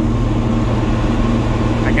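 Diesel tractor engine running steadily, heard from inside the cab while driving, a constant low hum with a steady droning tone.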